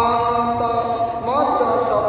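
A man chanting a recitation in one long, drawn-out melodic voice, in the manner of Qur'anic recitation: held notes that glide upward about halfway through and are held again.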